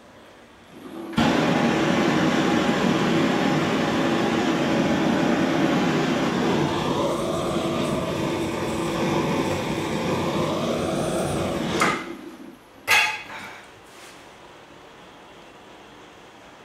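Hand-held gas blowtorch on a hose, lit suddenly about a second in and burning steadily for about eleven seconds while aimed at a freshly thrown clay form on the wheel to firm it up, then shut off. A single sharp knock follows about a second later.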